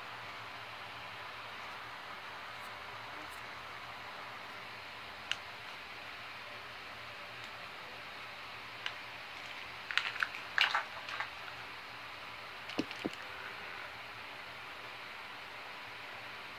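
Steady low hiss of room tone with scattered small handling clicks and rustles, a cluster of them about ten to eleven seconds in and another about thirteen seconds in.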